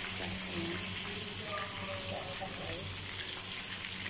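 Fish frying in hot oil in a pan, a steady sizzle, with a low steady hum underneath.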